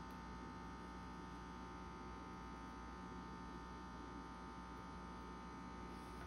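Faint steady electrical hum: kitchen room tone, with no distinct sound of spreading or handling.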